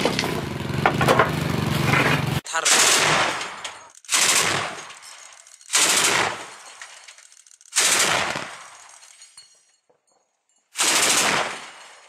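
Metallic clatter of a belt of large-calibre rounds being handled at a heavy gun's feed. After a cut about two and a half seconds in come five short bursts of automatic fire from a truck-mounted anti-aircraft autocannon, each fading out before the next.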